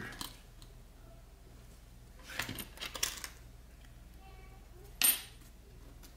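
Small metallic clicks and taps of a laptop coin-cell CMOS battery being handled while tape is worked off it: a cluster of clicks about two to three seconds in and a single sharp click about five seconds in.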